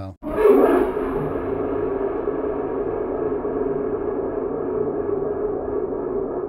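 Sampled ambient electric-guitar texture from Spitfire Audio's Ambient Guitars library, played from a keyboard: one held, crunchy, low-res drone that swells in just after the start and then sustains evenly before fading near the end.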